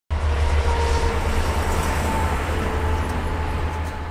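Heavy highway traffic: a steady low rumble of passing vehicles with road noise, beginning to fade out near the end.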